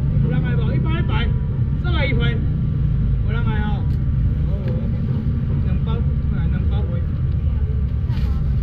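People talking in short bursts, strongest in the first half, over a constant low rumble like an engine or vehicle running.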